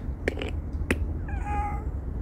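An elderly tabby cat, about 17 or 18 years old, gives one short meow about a second and a half in, after two sharp clicks; its voice sounds old.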